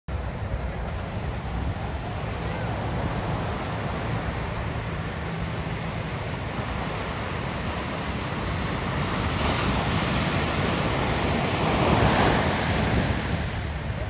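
Ocean surf breaking along the shore: a continuous wash of whitewater, with a breaking wave swelling louder about three quarters of the way through. Wind buffets the microphone with a low rumble throughout.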